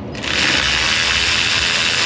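Ratchet turning out a 10 mm bolt on the mounting of a Duramax's ninth (exhaust) fuel injector: one steady, unbroken rattling run that starts a moment in, with no pauses for return strokes.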